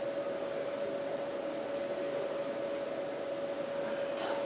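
Steady hiss with a constant mid-pitched hum: background room or recording noise, with no distinct event.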